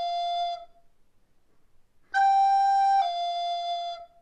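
Descant recorder playing a G slurred down to an F, tongued once and blown through the finger change without a gap. An F from one such pair fades out just after the start. About two seconds in, the G sounds for about a second and steps down to an F held nearly to the end.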